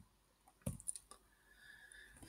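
A couple of faint clicks about two-thirds of a second in, a mouse or key press advancing the presentation slide, in an otherwise quiet room.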